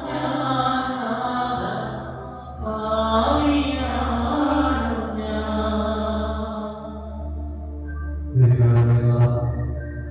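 Devotional chant during Eucharistic adoration: a voice singing long, held phrases over a steady low instrumental drone, with a louder phrase coming in near the end.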